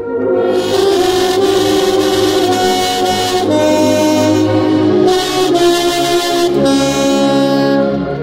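Saxophone playing a slow hymn melody in sustained notes, together with an ensemble that includes brass. The notes change about once a second, and a new phrase begins just after the start after a short breath break.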